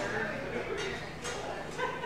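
Indistinct voices behind a fast-food counter, with a few sudden clatters from the open kitchen.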